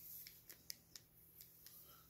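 Near silence with a few faint light clicks from handling a small metal pendant on a cord, the clearest about a second in.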